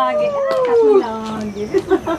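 Two women's long, drawn-out excited cries of greeting, held together with their pitch sliding down; the higher cry ends about a second in and the lower one carries on a little longer.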